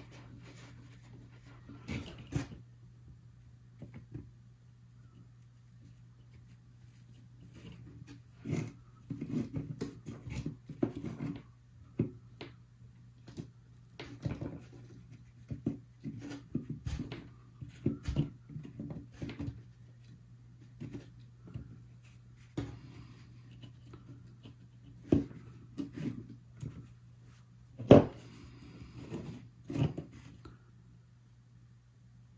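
Handling noises from wiring work: scattered light clicks and rustles of fingers twisting thin wires and knocking against a plastic bug-zapper housing, over a steady low hum, with a sharper click near the end.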